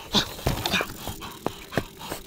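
Several sharp knocks and rattles of a Commencal Meta HT hardtail mountain bike rolling over rocks and roots, with the rider's short vocal noises.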